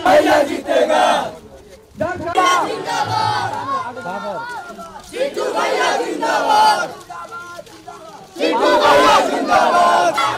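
A crowd of men shouting political slogans together in four loud bursts with short lulls between them.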